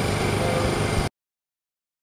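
Steady low mechanical hum of an engine or motor running, cut off abruptly about a second in, followed by dead silence.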